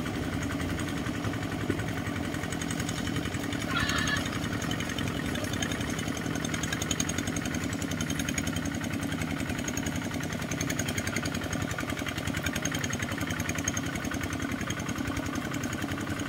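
Small single-cylinder diesel engines of two power tillers running steadily under load as they drag leveling boards through a flooded rice paddy, a fast, even chugging.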